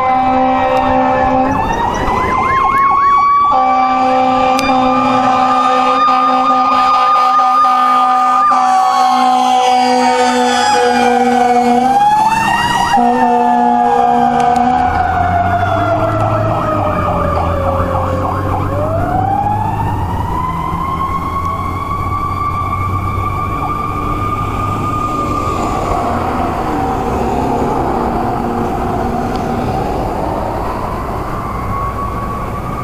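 Fire engine siren rising and falling in long, slow wails, over long steady horn blasts through the first half. A truck engine rumbles as the rig passes about halfway through.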